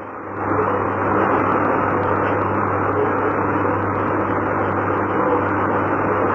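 Dense, muffled noise on an old tape recording with a steady mains hum underneath, jumping louder about half a second in and then holding steady.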